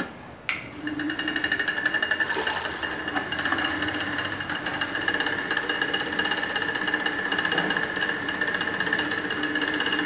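Electric bucket stirrer, its motor mounted on a lid over a bucket of soda flavour syrup, switched on about half a second in and then running steadily with a high whine and a fast rattle as it mixes the syrup.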